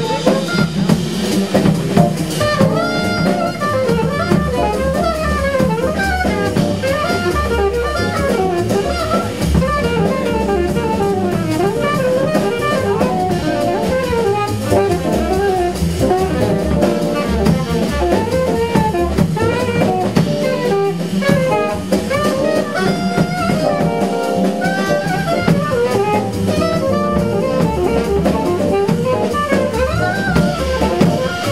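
Live small-group jazz: a saxophone solo of quick, continuous runs over a rhythm section of drum kit, bass and keyboard.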